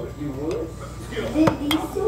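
Handling clicks and knocks of a steel pistol magazine against a hard plastic gun case, with one sharp click about one and a half seconds in.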